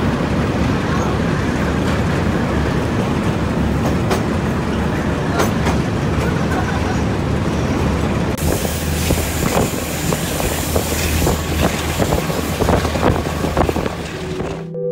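Train running along the track: a steady rumble with wheels clicking over rail joints, the clicks coming thicker in the second half. A louder hiss of rushing air comes in suddenly about eight seconds in.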